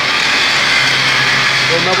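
Electric angle grinder grinding a steel beam, a steady hissing grind over a constant low motor hum.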